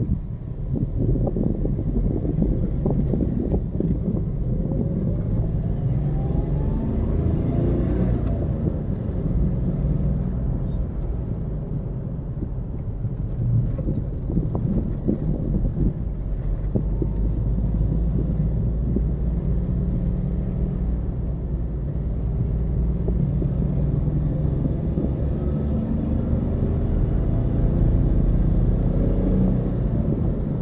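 Car interior driving noise: a steady low rumble of engine and tyres on the road, with the engine note rising a few times as the car speeds up.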